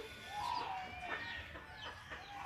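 Chickens clucking faintly: a few short calls.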